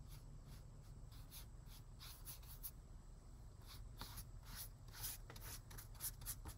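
Faint swishes of a flat paintbrush loaded with watercolor stroking across watercolor paper: a run of short strokes, one or two a second, at uneven spacing.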